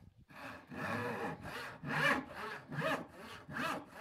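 Hand panel saw cutting through a wooden board in regular back-and-forth strokes, roughly two a second, starting about half a second in.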